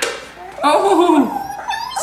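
Hatchimals interactive toy making its creature noises from inside its egg as it hatches: a drawn-out call that falls in pitch, then short high squeaks near the end, mixed with a child's voice saying "Nosey".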